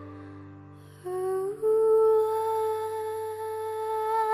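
A woman humming, sliding up into a long held note about a second in, over a low accompaniment chord that fades away.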